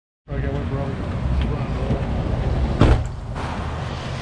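Street ambience beside a busy road: a steady low rumble of traffic with faint men's voices, and a brief loud rush just before three seconds.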